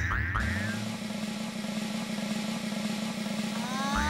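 Children's-TV comedy sound effect: a few quick bending whistle-like glides at the start, then a steady low buzzing note held as the big ball is pushed, with rising whistling glides starting near the end.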